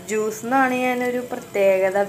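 A woman's voice holding several long, steady-pitched notes, more drawn out than ordinary talk, like half-sung or sing-song speech.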